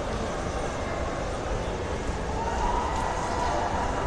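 Outdoor city background noise with a steady low rumble; a steady whine comes in about halfway through and holds.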